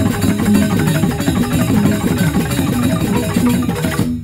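Traditional Indonesian dance music from a percussion ensemble: tuned mallet instruments and drums playing a rapid, dense stream of notes.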